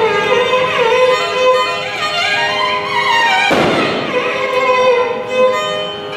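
Carnatic violin playing a sliding, ornamented melody in raga Bilahari over a steady drone. About three and a half seconds in there is one brief burst of noise.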